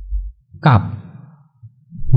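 A man says a single short word, preceded by a low puff of breath on the microphone.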